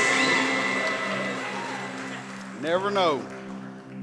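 A worship band's final chord with electric guitars ringing out and fading away over a steady held low note. About three seconds in, a single voice briefly calls out, rising then falling in pitch.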